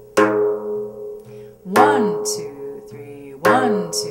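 Remo Thinline synthetic-headed frame drum played with tek and ka treble strokes at the edge of the head, in a steady three-count with a sharp accented stroke about every second and a half, the accents falling on alternating hands. Steady sustained backing music runs underneath.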